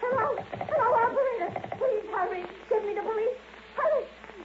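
Wordless vocal cries with a wavering, bending pitch, broken into several stretches, from an old radio-drama recording.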